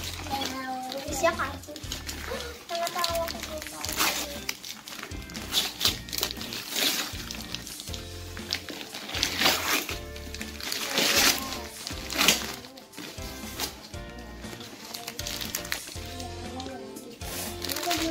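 Background music under wrapping paper being torn and rustled as presents are unwrapped, with short sharp bursts of tearing and crinkling several times, and children's voices now and then.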